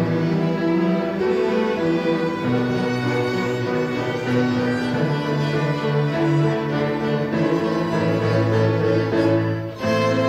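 A student string ensemble of violins and cellos playing a piece together, with sustained bowed notes and moving melody lines. Near the end there is a short break before the playing carries on.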